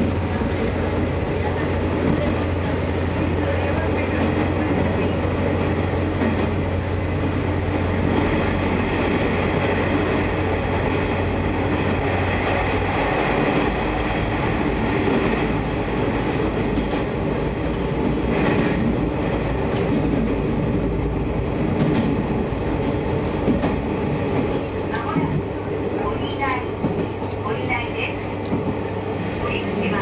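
Sanriku Railway diesel railcar running through a tunnel, heard inside the passenger car: a steady, loud rumble of wheels and engine. The low engine hum shifts in pitch about halfway through.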